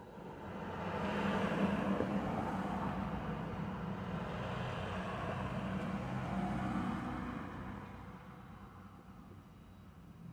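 A motor vehicle driving past, its engine and tyre noise growing louder over about a second, holding for several seconds, then fading away.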